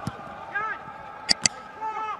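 Football match sound in a near-empty stadium: a few short, faint shouts from the pitch, and two sharp knocks a split second apart about two-thirds of the way through.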